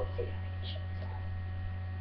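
Steady low electrical mains hum in the recording; nothing else stands out.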